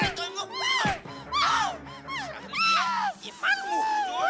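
A woman wailing and crying out in distress, in repeated rising-and-falling cries, over steady background music.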